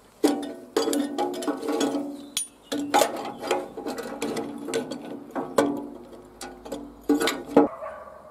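Socket ratchet wrench clicking on a rusted blade nut while a pipe wrench holds the flat steel blade. Metal knocks against the rusty steel housing ring after each hit.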